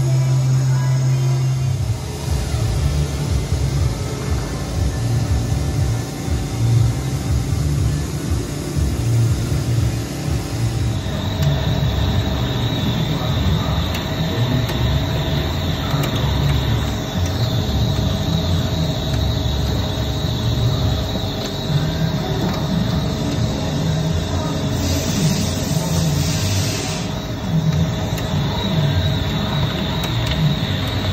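Okuma big-bore CNC multitasking lathe cutting a large stainless steel shaft under coolant, a steady rumble with music playing over it. A steady high tone joins about a third of the way in, and there is a brief hiss near the end.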